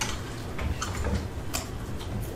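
A few separate, irregular clicks of laptop keys being typed, the sharpest about a second and a half in, over a steady low room hum.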